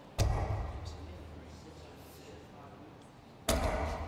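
Two darts thudding into a bristle dartboard about three seconds apart, each a sharp hit that fades quickly in the hall.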